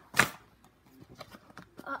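Paper and cardboard being handled as a card passport is pulled from its cardboard pocket: one short, sharp rip just after the start, then light rustles and clicks.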